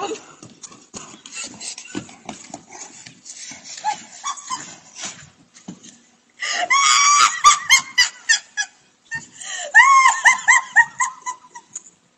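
A person shrieking with high-pitched laughter. It comes in a long loud cry about halfway through, then a run of short rising bursts, several a second. Scattered thumps and scuffling come before it.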